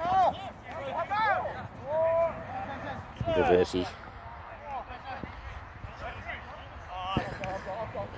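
Several short shouted calls from voices out on the field, with pauses between them and the loudest shout about halfway through, over open-air background noise.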